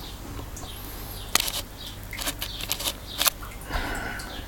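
A few sharp clicks and taps, the loudest about a second and a half in and again near three and a half seconds, over a faint steady background: handling noise from the camera as it is zoomed in.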